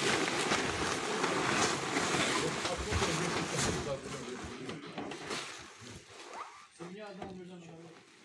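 Plastic tarpaulin rustling and crinkling as a wrapped bundle is handled and loaded into a van. It fades after about four seconds, and a man's voice is heard briefly near the end.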